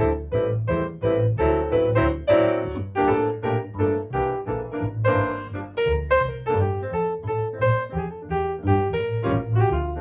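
Jazz duo of grand piano and upright double bass: the piano plays chords and melody over a plucked bass line that moves at about two notes a second.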